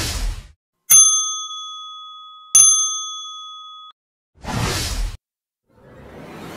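Editing sound effects: a whoosh, then two bell-like dings about a second and a half apart, each ringing out and fading, then another whoosh about four and a half seconds in.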